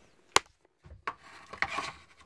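Handling noise: a single sharp click about a third of a second in, then rubbing and light knocks as things are picked up and moved about.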